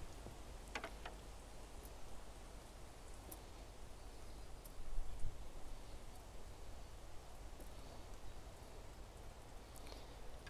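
Quiet outdoor background noise with a few faint, short clicks and a slightly louder stir about five seconds in.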